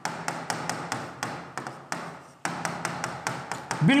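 A quick run of sharp taps, about five a second, with a short break a little after two seconds in, over a low steady hum.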